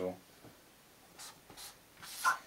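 A marker writing on paper: two short, faint strokes a little over a second in.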